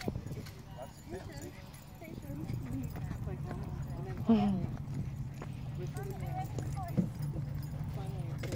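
Faint talk of several people at a distance over a low steady hum, with one short, louder call about four seconds in.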